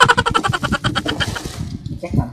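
Cardboard boxes being torn open by hand: a rapid, even rattle of ripping, like packing tape or cardboard tearing, that fades out over about a second and a half, with rustling and knocks of cardboard being handled.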